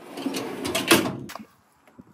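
Metal barbecue slide-out tray running along its rails in a caravan toolbox, a rough sliding scrape that ends in a knock about a second in.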